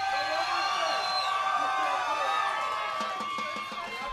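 Audience cheering and applauding after a bandmate's name is called out, the noise dying down near the end.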